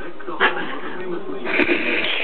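Cat yowling and growling in a low, wavering voice during a play-fight. There is a short sharp noise about half a second in, and the sound grows louder and harsher near the end.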